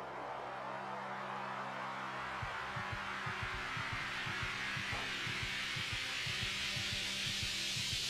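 Suspense film score: a steady low drone under a swelling, brightening hiss, with soft low pulses at about four a second joining about two and a half seconds in.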